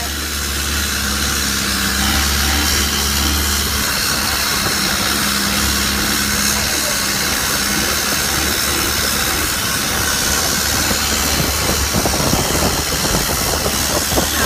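Boat engine running steadily under way, a constant low drone over an even hiss.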